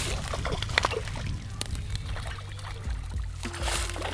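A hooked bass thrashing and splashing at the surface of a pond, a run of irregular water splashes and slaps with scattered sharp ticks.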